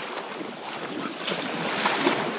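Water splashing and churning as a dog surges through shallow bay water, building louder toward the end.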